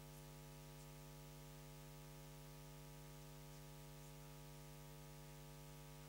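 Near silence: a faint, steady electrical mains hum with a low hiss on the audio line, unchanging throughout.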